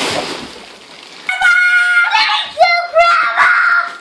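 Children squealing with excitement: several long, high-pitched squeals, the first starting a little over a second in.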